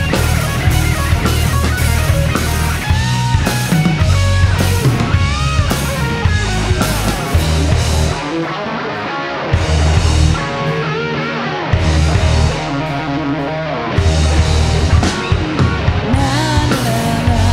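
Live rock band playing an instrumental passage on electric guitars, bass and drum kit, with a lead guitar line. In the second half the bass and drums drop out between three short full-band stop-time hits.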